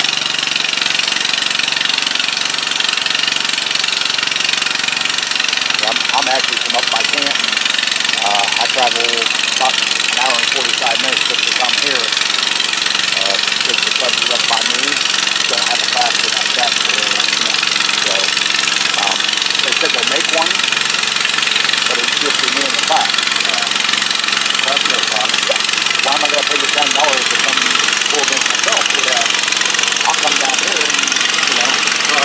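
Several modified garden tractor engines running steadily at idle in a staging line, a constant loud mechanical drone with no revving. People talk nearby over the engines.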